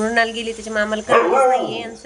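A woman talking, with a louder, rougher voiced sound a little past the middle.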